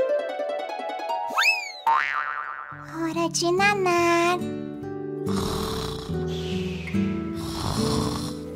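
Children's background music laid with cartoon sound effects: a rising whistle about a second and a half in, a quick falling sweep, then a wobbly boing. From about five seconds, a comic snoring effect swells and fades over the music.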